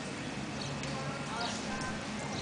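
Horse hoofbeats at the lope on arena footing, amid a steady background murmur of voices.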